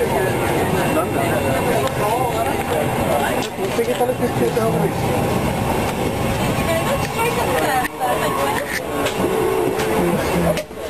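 Indistinct chatter of several voices over the steady drone of an airliner cabin, with a couple of brief handling bumps.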